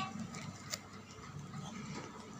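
Faint background din of an amusement arcade, with one sharp click about three quarters of a second in.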